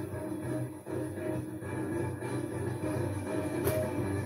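Opening theme music of a TV sports programme, playing steadily, with one short sharp accent near the end.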